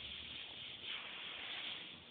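Airbrush hissing as it sprays paint, swelling a couple of times as the trigger is worked for pinstriping.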